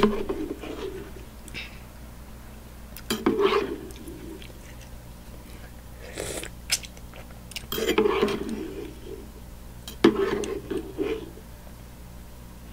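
A person eating instant noodles close to the microphone: slurping strands and chewing, with the fork clicking against the bowl. The sounds come in five bursts, every two to three seconds.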